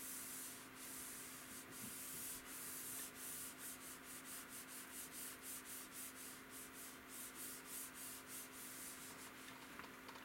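Faint rubbing hiss of a palm brushing back and forth over a computer monitor screen, in regular strokes that quicken to about three a second.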